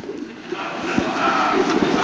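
Lecture-hall audience laughing together at a slip of the tongue, a noisy crowd laugh that builds after the first half-second, with a single soft knock about a second in.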